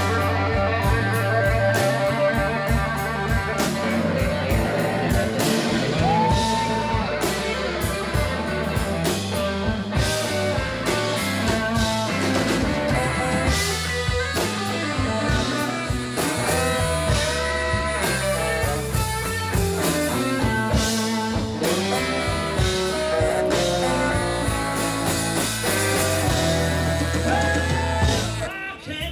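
Live blues-rock band playing an instrumental passage: electric guitar, saxophone, bass and drum kit, with steady drum hits under the guitar and sax lines.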